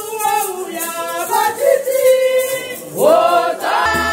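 A group of people singing a hymn together without accompaniment, voices close to the microphone. Near the end a low, steady beat comes in under the singing.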